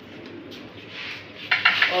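Low kitchen room tone. About one and a half seconds in there is a short burst of clicks and rustling as cups and a plastic snack packet are handled on the counter.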